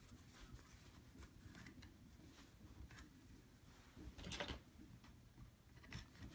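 Near silence: quiet room tone, with one brief soft rustle about four seconds in.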